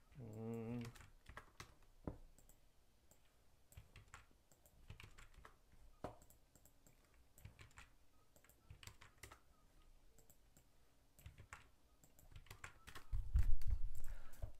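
Typing on a computer keyboard: irregular, quiet key clicks, with a short hummed voice sound near the start.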